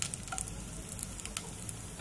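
Cumin seeds and whole spices sizzling in hot oil in a pot, tempering before the onions go in: a soft, steady hiss with a few faint pops.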